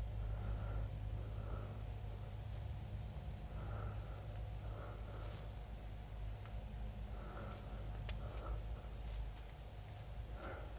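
Quiet room with a steady low hum, soft faint breaths, and a couple of faint clicks from a disc detainer pick turning the discs inside a disc detainer lock, about halfway through and again near the end.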